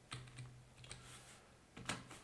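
Computer keyboard being typed on, faint: a few separate keystrokes, the loudest near the end.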